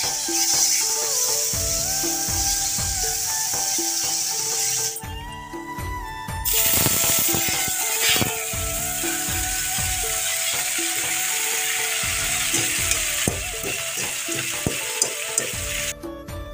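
Hot oil sizzling in a frying pan while vegetables are stirred with a wooden spatula, over background music with a melody. The sizzle drops away for about a second and a half near the middle. It then comes back louder as chopped red leafy greens are tipped into a hot wok.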